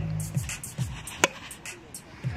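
A homemade 100 cm pesäpallo bat striking the ball once, about a second and a quarter in: a short, dull hit. Background music with a steady beat plays throughout.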